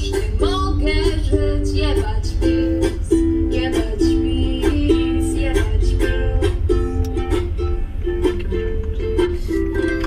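A song with a rhythm of plucked strings, and singing in the first couple of seconds, playing from a van's radio speakers over the steady low rumble of the moving van.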